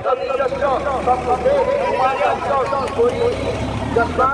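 Several people talking at once around a stopped bus. Under the voices, a low steady rumble of the bus's diesel engine idling starts about half a second in.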